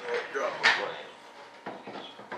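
Light handling noises as an epoxied stabilizer post is pushed into a model jet's fuselage: a short hiss about two-thirds of a second in and a few small clicks near the end.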